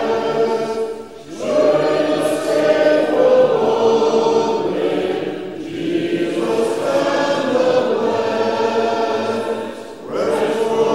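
Congregation singing a hymn together, many voices without instruments, in sustained phrases with brief breaks between lines about a second in and again near the end.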